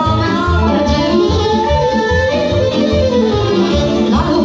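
Live band playing Romanian folk dance music through loudspeakers: a mostly instrumental passage with a steady bass beat under a lead melody line.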